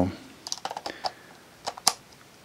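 Hard plastic clicks and rattles of a large battery pack being fitted onto a Sony DCR-HC21 camcorder's battery mount: a few light clicks about half a second in, then two sharper clicks near the end, the last and loudest as the pack seats.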